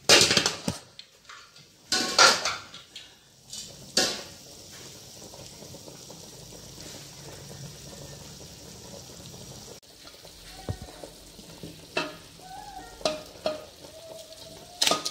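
Aluminium pressure cooker and its lid clanking, with several sharp metal knocks in the first four seconds and a few lighter clinks near the end.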